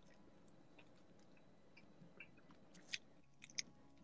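Near silence with faint chewing and biting on sauced fried chicken wings, with a few soft mouth smacks and clicks in the second half.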